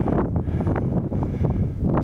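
Wind buffeting the camera's microphone, an uneven low rumble.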